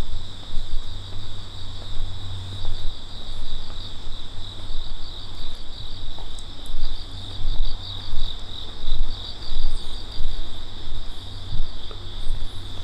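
Crickets chirring steadily in a high, continuous band, with a faster pulsing trill above it. Underneath runs a louder low rumble that swells and fades about once or twice a second.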